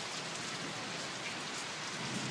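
Steady rain falling, an even patter with no change through the moment.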